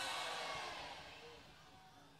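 The tail of a sholawat chant with its musical accompaniment, fading steadily away to near silence.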